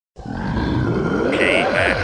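A low, rough voice-like sound, processed so that its pitch slides downward in several streaks.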